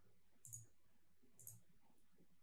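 Two faint computer mouse clicks about a second apart, with near silence around them.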